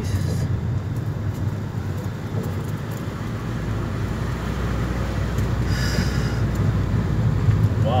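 Vehicle engine running and tyres rolling over a dirt track, heard from inside the cabin as a steady low rumble, with a brief higher hiss about six seconds in.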